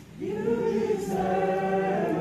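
Worship singing led by a woman's voice through the church microphone, with other voices singing along. A slow phrase of long, held notes begins just after the start.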